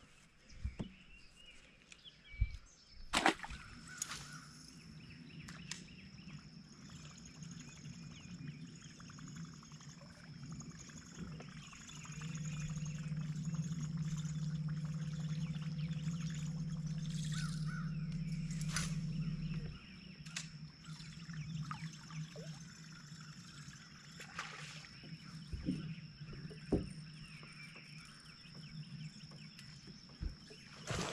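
A bass boat's bow-mounted electric trolling motor humming steadily for about eight seconds in the middle, then cutting off suddenly. Around it, water laps against the hull, with a few sharp knocks on the deck.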